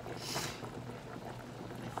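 Saucepan of small potatoes at a rolling boil, a steady bubbling, with a short hiss about a third of a second in.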